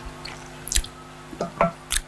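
Wet mouth clicks and lip smacks picked up close on a headset microphone, a few separate ticks with a brief low murmur near the end, over a steady low electrical hum from the sound system.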